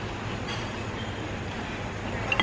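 Steady rumbling background noise with a low hum, with a faint light click about half a second in.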